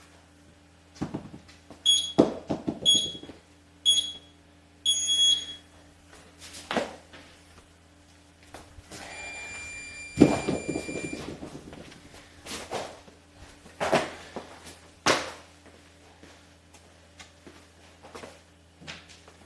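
Workout timer beeping a start countdown: three short high beeps about a second apart and a longer fourth. Then thuds and clanks of hex dumbbells knocking and being set down on a concrete floor during dumbbell squats, the loudest about ten seconds in, just after a lower beep held for about two seconds.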